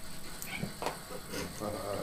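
A few faint clicks and scuffs, then a person's drawn-out 'uh-huh' near the end.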